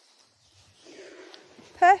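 Mostly quiet, with a faint low rustle about halfway through, then a man's voice starting a word near the end.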